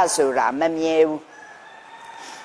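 A woman speaking, ending in a long drawn-out syllable held at a level pitch, then a short pause with faint room tone.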